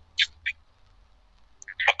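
A pause in a spoken conversation: a faint low hum, two short hissing sounds in the first half second, and a voice starting to speak just before the end.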